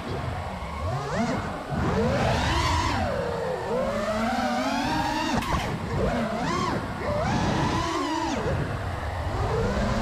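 Freestyle FPV quadcopter's brushless motors whining, their pitch rising and falling constantly as the throttle changes through flips and turns.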